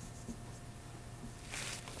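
Wide flat brush scrubbing acrylic paint back and forth on canvas: faint, with a louder scratchy stretch about three-quarters of the way in, over a low steady room hum.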